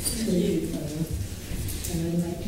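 Speech only: a voice talking, the words indistinct.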